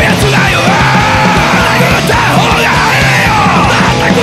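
Hardcore punk/metal band playing: a vocalist screams and yells over fast, pounding drums with cymbal crashes and a dense, heavy band.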